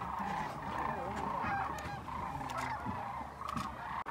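A large flock of sandhill cranes calling in flight as they fly in overhead: a dense, unbroken chorus of many overlapping calls.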